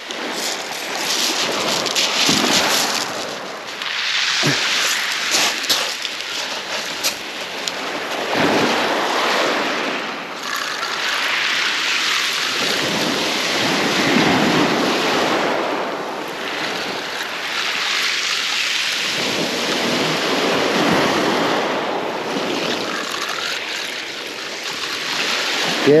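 Small waves breaking and washing over a shingle beach, the surf swelling and easing every few seconds, with a crackle of pebbles in the wash.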